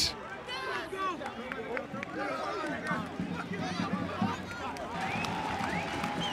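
Several voices shouting and calling over one another around a soccer pitch, picked up by the field microphones: players and spectators in the stands.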